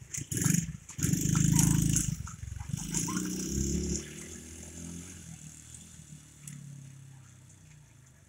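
Small four-wheeler (ATV) engine running loudly close by, then fading steadily as it drives away.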